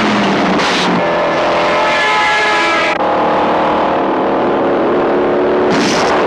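Film soundtrack of car engines running hard at high speed in a chase, a loud engine note over road and tyre noise, with a cut about halfway through to a different, lower engine note.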